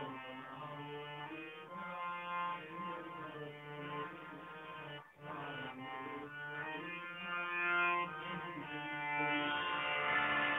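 Electronic keyboard playing a melody of long sustained notes over a steady low held note, with a brief break about five seconds in and growing louder toward the end.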